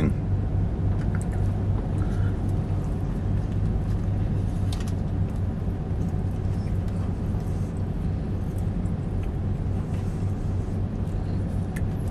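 Steady low hum of a car's idling engine heard inside the cabin, with a few faint chewing sounds over it.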